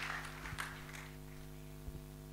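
Crowd noise from a congregation fading out over the first second, leaving a steady electrical hum from the sound system, with a couple of faint knocks.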